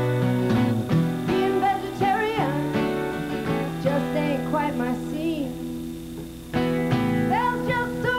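Live acoustic folk song: a woman singing over a steadily strummed acoustic guitar. The music drops back briefly past the middle, then the strumming comes in loud again.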